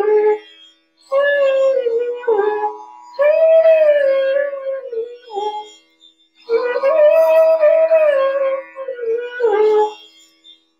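Bansuri (bamboo flute) playing three slow melodic phrases of Raga Kedar with short pauses between them, each phrase gliding down at its end, over a faint steady drone. The phrases bring in the komal nishad (flat seventh), used sparingly as an ornament.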